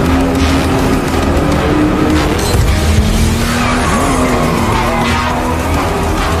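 Aston Martin DB5 skidding with its tyres squealing and engine running hard, mixed over loud film music.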